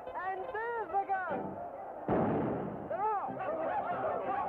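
A single loud starting-gun shot about two seconds in, signalling the start of a cartoon dog race. Before the shot comes a drawn-out, sing-song voice, and after it a short rising-and-falling cry.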